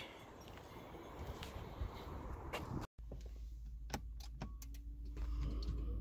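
Outdoor background noise, then inside the Prius cabin a steady low hum with scattered clicks and knocks of handling.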